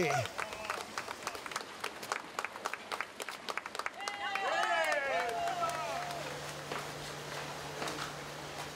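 Scattered hand clapping from a few people for about four seconds. Then comes a short run of high, falling calls, and a low steady hum sets in just after halfway.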